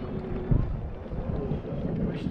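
Wind buffeting the microphone aboard a small sailboat under sail in strong wind, a steady low rumble with one louder gust about half a second in.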